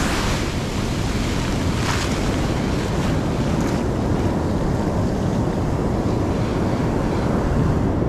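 Ocean surf washing up the beach, a steady rushing noise, with wind buffeting the microphone.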